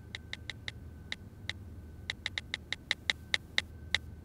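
Irregular, quick clicks of someone typing a message on a smartphone, about twenty taps, getting louder in the second half.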